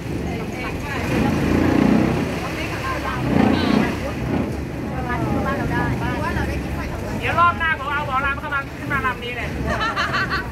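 Longtail boat engine running steadily under the canopy, with passengers' voices over it, mostly in the second half.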